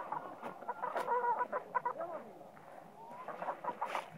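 Chickens clucking in quick, wavering calls, busiest in the first two seconds and again near the end: the agitated calling of hens confronting a snake.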